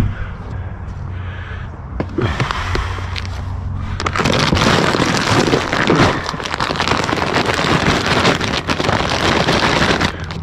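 Stiff plastic feed bag rustling and crinkling as it is handled, densest and loudest from about four seconds in.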